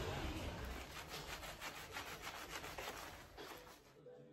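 Handling noise: a scratchy rubbing against the phone's microphone as it is carried, in many quick strokes, fading away toward the end.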